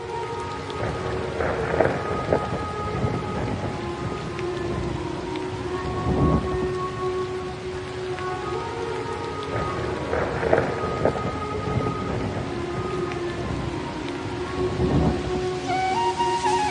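Rain and thunder ambience of the kind laid under lofi mixes: steady rain with thunder rumbling up about four times, over a few soft held tones.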